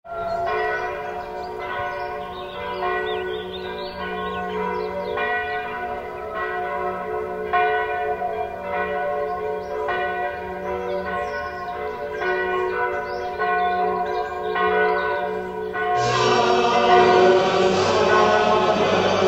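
Church bells ringing, a new stroke about every second over the overlapping ring of several bells. About two seconds before the end the sound grows louder and fuller.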